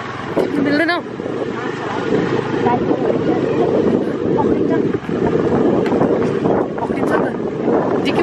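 Wind buffeting the microphone of a moving motorbike, a loud steady low rumble mixed with the bike's running noise as it rides along a dirt track.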